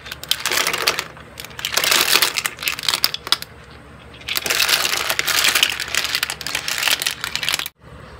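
Ark clams (sò lông) tipped from a plastic colander into a metal pot of boiling water, their shells clattering and rattling against each other and the pot in three long bursts with sharp clicks between. The sound cuts off suddenly near the end.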